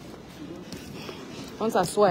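Low, steady background noise of an airport terminal with a faint distant voice, then a spoken word near the end.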